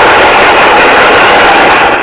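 Loud, steady applause from a classroom of students clapping together, starting abruptly and holding at an even level until speech cuts in.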